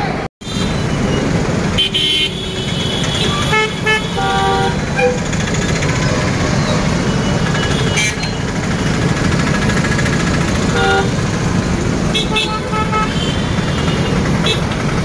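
Busy city street traffic with a steady rumble of vehicles and several short vehicle horn toots, a cluster of them about four seconds in and more near the end. The sound drops out for a split second just after the start.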